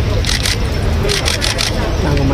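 Camera shutters clicking in quick runs, a short burst about half a second in and a longer one after a second, over a steady low outdoor rumble and voices.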